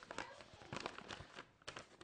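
Faint rustling and crinkling of paper in short, irregular crackles as a folded letter and its envelope are handled and opened out.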